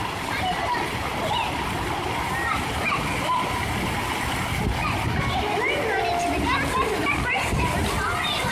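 Plaza fountain jets splashing steadily, with voices and some children's chatter over the water.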